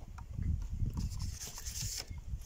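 Low, uneven rumble on a handheld phone's microphone, like wind or handling noise, with faint rustling and a soft hiss in the second half.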